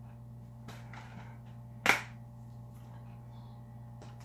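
Plastic Blu-ray case being snapped open: one sharp click just before two seconds in, over a low steady hum.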